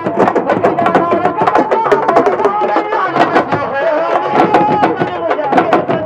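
Senegalese sabar drum ensemble playing a fast, dense rhythm, the drums struck with sticks and bare hands in rapid overlapping strokes.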